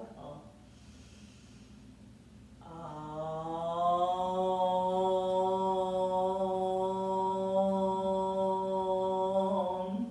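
A woman chanting a single long "Om", starting about three seconds in. It slides up slightly at first, then holds one steady pitch for about seven seconds.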